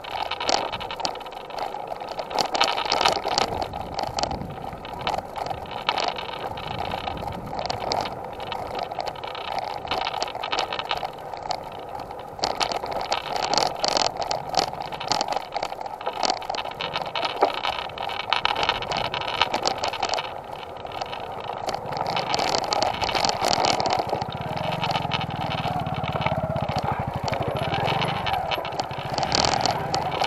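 Road noise and frequent sharp rattling from a ride along a rough unpaved dirt lane, the mounted camera jolting over the bumps. A low hum comes in past the middle.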